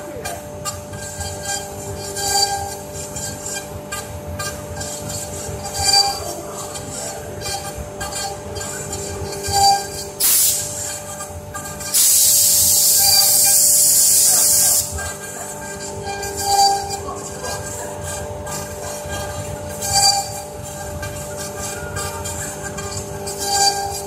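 Two spindles of a double-head CNC wood router running with a steady whine as their bits carve a relief into a wooden board, the cutting sound swelling briefly every few seconds. About halfway through, a loud hiss lasts about three seconds.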